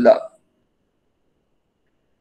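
A man's spoken word trailing off in the first moment, then dead silence.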